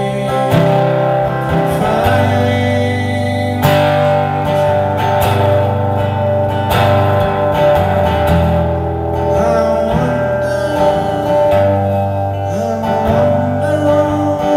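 Live solo song: an archtop guitar played in slow, ringing chords with held bass notes changing every second or two, and a man singing into a microphone at times.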